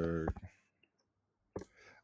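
A few soft computer-keyboard clicks while a spreadsheet formula is typed, with near silence between them. The end of a spoken word is heard at the very start.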